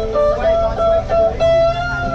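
Amplified electric guitar played live: a line of held notes that steps from pitch to pitch, the last note sustained near the end.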